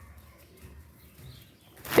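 Faint low thuds of footsteps and phone handling on a staircase, then a sudden loud breathy rush near the end as a voice begins.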